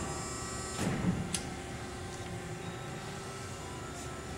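LVD 240-ton hydraulic press brake running, its hydraulic power unit giving a steady hum with several constant tones. A short clunk and then a sharp click come about a second in.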